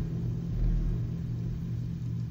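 Steady low rumble with a constant low hum underneath: a background ambience track laid under the narration.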